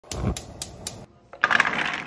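Gas stove burner's spark igniter clicking four times in quick succession, about four clicks a second, then a short louder rushing noise near the end.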